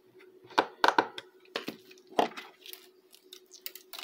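Small sharp clicks and knocks from a screwdriver tightening wires into the screw terminals of a small timer relay module and from handling the board. They are loudest in the first two seconds and turn to lighter ticks after. A faint steady hum runs underneath.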